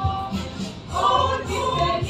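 A mixed church choir of men's and women's voices singing together in parts, with a brief break in the sound just before a second in before the next phrase begins.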